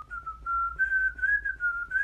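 A person whistling into a microphone: one clear whistled tone held through, moving in small steps up and down in pitch like a slow tune.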